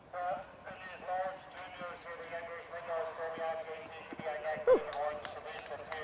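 High-pitched voices cheering and calling out without clear words, over the soft hoofbeats of a horse cantering on sand footing after its jumping round. One sharp cry about three-quarters of the way through is the loudest sound.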